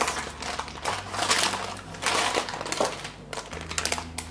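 Parchment paper crinkling and rustling as it is gripped and pulled up to lift a cake out of its baking pan, a run of irregular crackles.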